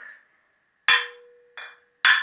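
Hammer knocks on the valve-stem ends of a freshly assembled Triumph T120R Bonneville cylinder head, to seat the collets in the exhaust valves' spring retainers. One sharp metallic knock about a second in rings on with a steady tone, then a lighter knock comes just after.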